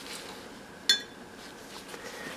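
A single short metallic clink about a second in, a metal utensil set down on a stone countertop, ringing briefly. Otherwise quiet room background.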